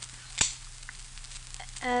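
A single sharp click of a light switch being turned on, about half a second in, over the steady hiss and crackle of an old radio recording. A voice begins near the end.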